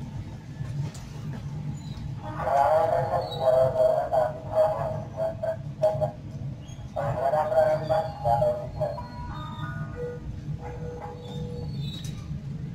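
Steady low hum of a stationary passenger train. Over it, a raised human voice calls loudly in two stretches of a few seconds each, starting about two seconds in and again near the middle.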